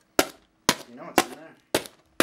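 Folding utility knife stabbing into the top of a cardboard shipping box: four sharp punctures about half a second apart.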